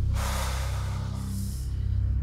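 Suspenseful background music with a steady low drone. Near the start comes a breathy rush of noise lasting about a second, followed by a fainter high hiss.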